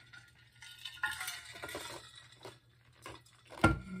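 Soft clinks, clicks and rustling of small objects being handled, busiest about a second in, then a thump near the end.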